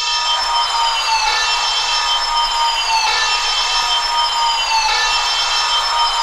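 Breakdown in an old-school techno track: the kick drum drops out and sustained high synth chords hold, a few of the notes sliding slowly downward.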